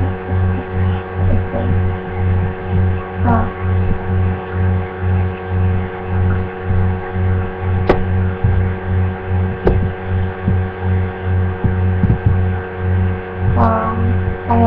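Loud steady electrical hum with a low throb pulsing about two and a half times a second, and two brief clicks about eight and ten seconds in.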